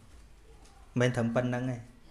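Speech only: a man's voice speaks a short phrase about a second in, after a pause filled by quiet room tone.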